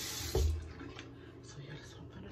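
Tap water running into a sink, cut off suddenly about half a second in with a short low thump; faint small clicks and handling sounds follow.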